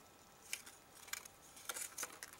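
Faint crinkles and clicks of a thin clear plastic bag being handled as a small plastic toy figure is worked out of it, a few short rustles spread through the moment.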